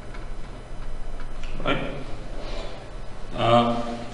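Pen writing on paper, giving faint scratches and ticks. Two brief wordless vocal sounds from the writer come partway through, the second one louder, near the end.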